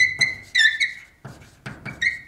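Chalk writing on a chalkboard: a few short, high squeaks from the chalk in the first second, then quick taps and scrapes of the strokes, and another squeak right at the end.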